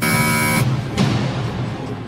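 Harsh game-show buzzer sounding for about half a second as a question is passed, followed by a short hit about a second in, over steady background duel music.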